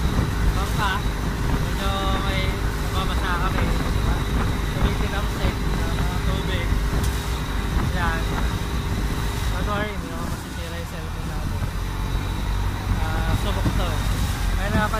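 Motorized outrigger boat (bangka) running fast across open water: a steady engine drone with wind rush and water splashing against the hull, easing slightly for a moment about ten seconds in.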